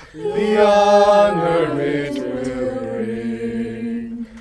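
Mixed-voice a cappella group singing sustained chords in harmony without clear words. A new chord swells in after a brief breath at the start and is held.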